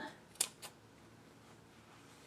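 Fabric scissors snipping twice through the top layer of a sewn fabric square, cutting along a drawn diagonal line: two short, sharp snips about half a second in, a quarter second apart.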